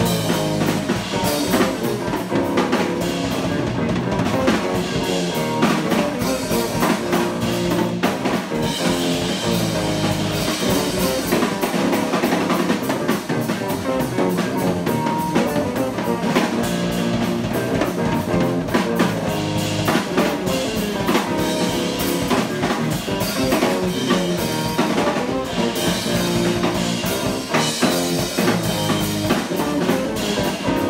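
A live instrumental trio playing: electric guitar, electric bass and a drum kit with cymbals, keeping a continuous groove with steady drum hits.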